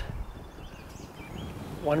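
Quiet outdoor background with a few faint, distant bird calls, before a man's voice comes in near the end.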